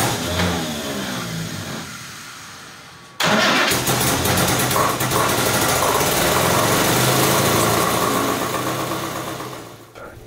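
Triumph TR3's four-cylinder engine with twin SU carburettors running, its sound dying away over the first three seconds. About three seconds in, the engine sound comes in again suddenly, runs steadily at a higher level, and fades near the end.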